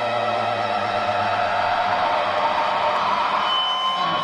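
A live band's sustained closing chord ringing out: steady held tones with a slight glide, and a high held note coming in near the end. It is heard through an audience recording in a large arena.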